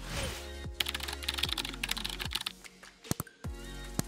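Computer keyboard typing sound effect: a rapid run of keystrokes lasting about a second and a half, over background music with a steady beat. About three seconds in come two sharp clicks.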